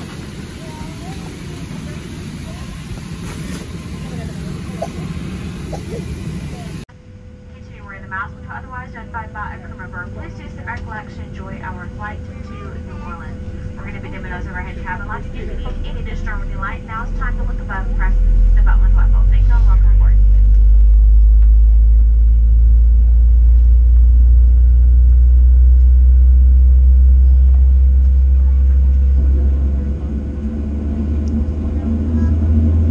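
Boeing 737 cabin noise heard from inside the cabin: a steady hum, then people talking over a steady whine. From about 17 seconds in, a loud, steady low rumble takes over and stops just before the end.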